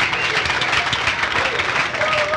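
Audience applauding just after a live song ends, with a few voices cheering among the clapping.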